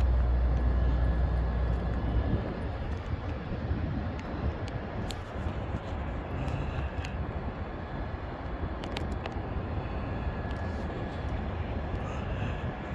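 Wind buffeting the phone's microphone outdoors: a heavy low rumble for the first two seconds, easing into a steady rushing background with a few faint clicks.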